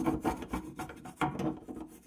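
Bent toothbrush scrubbing the stainless-steel rim and wall inside a kitchen sink drain, bristles rasping against the metal in quick, uneven back-and-forth strokes.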